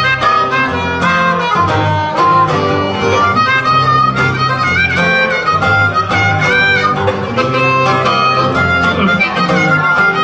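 Instrumental break of a blues song: amplified harmonica playing a lead line with notes that bend and slide, over a strummed acoustic guitar.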